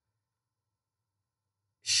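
Near silence with a faint low room hum, then a man's speaking voice begins just before the end.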